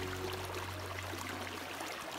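A small creek running over rock, an even rushing haze, with the last of the background music fading under it and ending just before the close.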